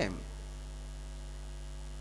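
Steady low electrical mains hum with faint higher harmonics, the kind carried by a sound system's amplified feed. The tail of a man's spoken word fades out just at the start.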